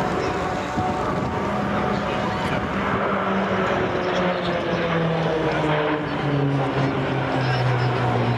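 Four Pilatus PC-9 turboprop trainers flying past in close formation, their propeller drone falling steadily in pitch as they pass overhead.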